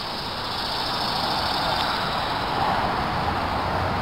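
Road vehicle noise: a steady rushing sound that swells slightly in the middle, with a low engine hum coming in near the end.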